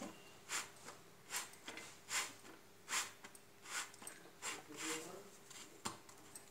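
A folded cloth pressing and rubbing a roti on a hot iron tawa, a run of soft scuffing strokes about one a second. The roti is being pressed down so it cooks through on a low flame.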